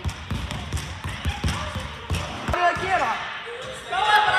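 A ball bouncing repeatedly on a sports-hall floor, a few irregular thumps a second, with people's voices.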